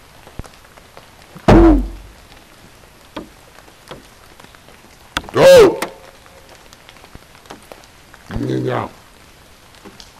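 A man's voice calling out three short whoops, each rising then falling in pitch, about a second and a half, five and a half and eight and a half seconds in; the middle one is the loudest. Faint scattered ticks sound between the calls.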